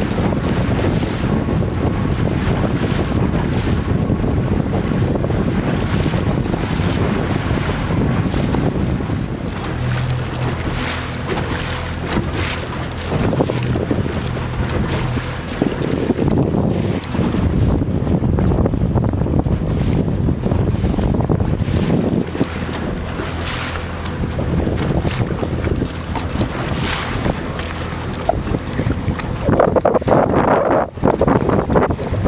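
Wind buffeting the microphone on a boat, over choppy water splashing and slapping close by. A faint low steady hum comes in partway through.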